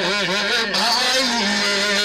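A man singing a naat (Urdu devotional poem) into a microphone over a PA: an ornamented line with the pitch wavering up and down, settling into one long held note about halfway through.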